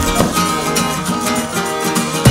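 Background music led by guitar, with a steady beat.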